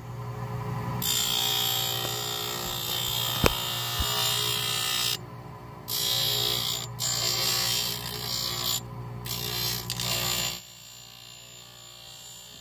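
A spinning stone grinding wheel on a dental lab lathe grinds orthodontic brackets off a 3D-printed resin model with a harsh, hissing grind over a steady motor hum. The grinding starts about a second in and breaks off briefly three times as the model is lifted from the wheel. It stops a little before the end, leaving only the hum.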